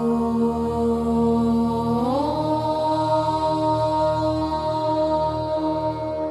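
Devotional chant music: a voice holds one long vowel over a steady low drone, gliding up to a higher held note about two seconds in.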